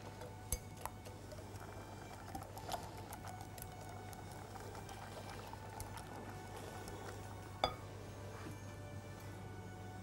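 Wire whisk stirring a thin milk mixture in a glass bowl, with a few light clinks of the whisk against the glass, the sharpest about three-quarters of the way through. Faint background music and a low steady hum run underneath.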